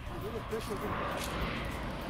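A faint voice murmuring briefly in the first second over steady outdoor background noise.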